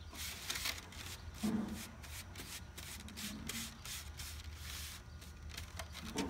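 A flat paintbrush stirring thinned, watery paint on a ceramic plate: a run of short, irregular brushing and scraping strokes as the bristles drag across the plate.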